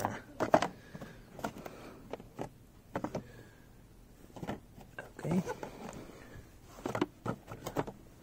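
Light clicks and taps of handling, scattered through a quiet small room, with brief murmured voice sounds about five and seven seconds in.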